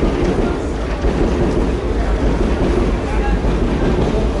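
Paris Métro train passing on the elevated viaduct overhead, a steady low rumble.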